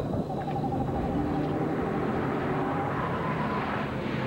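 Dramatised car sounds from a TV commercial: a car running along a road with dense engine and road noise, and a long wavering tone over it that fades out about three seconds in.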